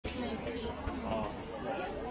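Background chatter of several people talking at once, with no clear words.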